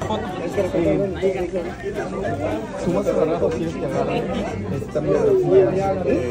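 Several people talking at once in casual conversation, the words indistinct.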